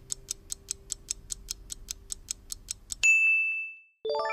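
Countdown-timer sound effect ticking steadily, about five ticks a second, then a single loud bell ding about three seconds in that rings out, marking that the time for the puzzle is up.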